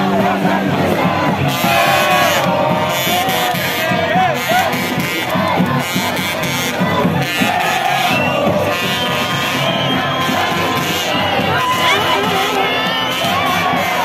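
A large street crowd of football fans cheering, shouting and chanting, many voices singing and yelling together at a steady, loud level.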